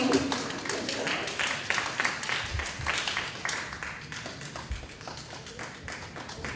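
A small audience applauding with hand claps. The clapping is dense at first and thins out over the last few seconds.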